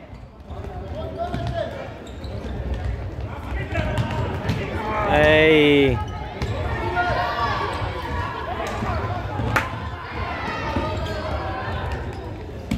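A futsal ball being kicked and bouncing on a wooden sports-hall floor, the thumps echoing in the large hall, under a murmur of spectators' voices. A loud shout rises and falls about five seconds in, and a sharp single kick sounds near the ninth or tenth second.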